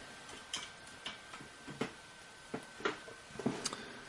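Faint, irregular clicks and taps of a USB charging cable and plug being handled and plugged in to charge the phone, about eight small clicks spread unevenly, over a faint steady high tone.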